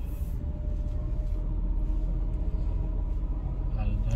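Steady low rumble of a car's engine and tyres heard inside the cabin while driving slowly, with a faint steady hum above it.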